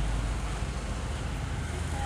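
A steady low rumble and hum of background noise, with no distinct knocks or clicks.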